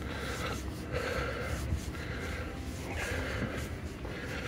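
Soft breathing close to the microphone over a low steady hum, with a few faint breathy puffs.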